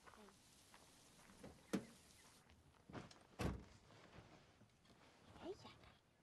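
A sharp click, then a little over a second and a half later a heavier, deeper thump, over a quiet background.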